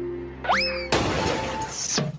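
Logo jingle: a held synthesizer chord with a rising swoosh about half a second in. Then, just before one second, comes a sudden loud crash that rings on to the end.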